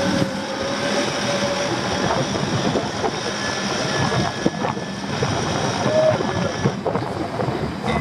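Off-road 4x4 engine running, mixed with a steady rushing noise.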